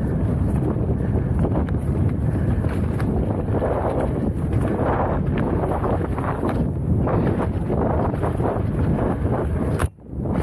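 Wind buffeting a helmet-mounted camera's microphone during a fast mountain-bike descent on a dirt trail, over a steady rumble of tyres on dirt and frequent knocks and rattles from the bike hitting bumps. The sound drops away for a moment near the end.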